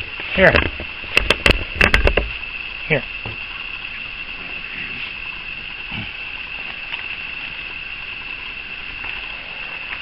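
A steady, high-pitched chorus of night insects, with a handful of sharp knocks between about one and two seconds in.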